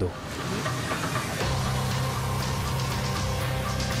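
Dramatic background music from a TV drama score: a low sustained drone-like tone comes in about a second and a half in and holds steady.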